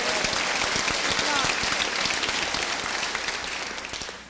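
Large audience applauding, the dense clapping thinning out and fading near the end.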